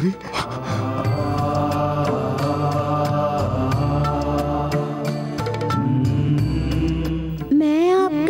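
Devotional background music: long held, chant-like notes over a low steady drone. Near the end a solo singing voice with a wavering pitch comes in.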